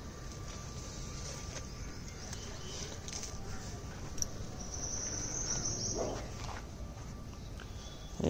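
A golden retriever sniffing at the ground, with a low background rumble and a brief high-pitched sound about five seconds in.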